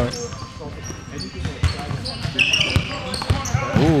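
A basketball bouncing a few times on a hardwood gym floor, with a brief sneaker squeak on the court.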